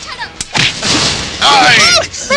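Film sound effect of an automatic rifle firing loud bursts, starting with a sharp crack about half a second in. A voice shouts over the second burst near the end.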